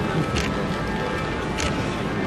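Steady outdoor street noise, with two short, sharp sounds about a second apart.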